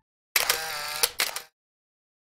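A short intro sound effect over a logo animation: a sharp click, a brief ringing tone, then two more clicks close together, like a camera shutter, over in about a second.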